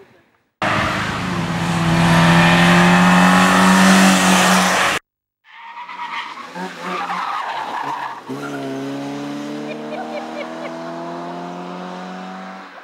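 A small hatchback competition car's engine revving hard as it accelerates up the hill. The sound cuts off abruptly about five seconds in, then returns with the engine pitch climbing steadily through one gear before fading near the end.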